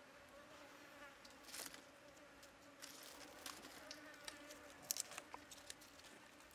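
Faint buzzing of a flying insect: a steady, slightly wavering hum, with a few soft clicks and taps.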